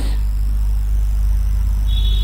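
A steady low hum of background noise with no change, and a faint high tone near the end.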